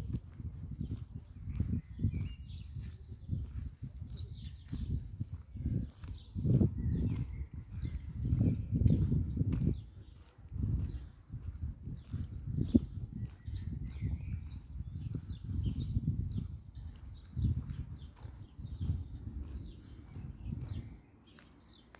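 Wind buffeting a phone microphone in uneven gusts of low rumble, with small birds chirping here and there.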